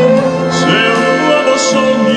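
Live symphony orchestra, strings with harp, holding sustained chords of a slow ballad accompaniment in a short gap between the tenor's sung lines.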